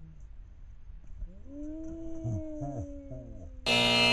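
An edited-in buzzer sound effect, a loud flat multi-tone blare that starts abruptly near the end and lasts about a second, marking a letter given for a missed trick in a game of BIKE. Before it, a quieter wavering pitched sound with slowly falling tones.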